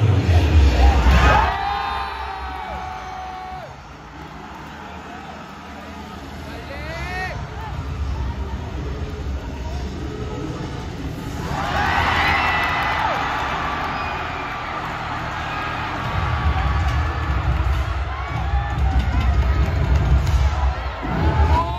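Cheerdance routine music mix playing over the arena sound system, with voice samples and swooping pitch effects, under crowd cheering. It drops quieter a few seconds in, swells again, and a heavy bass beat comes in near the end.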